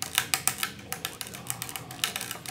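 Electric bass guitar played quickly: a fast, uneven run of sharp string attacks clicking over faint low notes. One of its strings is an old broken one tied back together in a knot, which the player thinks has no effect on the sound.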